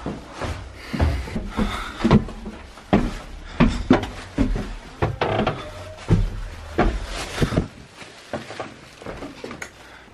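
Footsteps on wooden stairs and floorboards: irregular knocks and thuds, about two a second, with rustle from a handheld camera.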